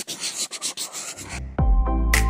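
Crumpling, rustling paper sound effect, a dense run of rapid crackles lasting about a second and a half, then electronic intro music with a heavy bass comes in.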